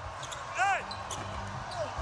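Court sounds of a live basketball game: one brief high-pitched squeak about half a second in, a few faint knocks, over a low steady arena hum.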